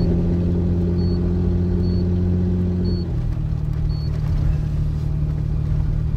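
Toyota Land Cruiser's engine droning steadily under load with gravel-road tyre noise, heard from inside the cab while climbing. About three seconds in, the engine note drops lower.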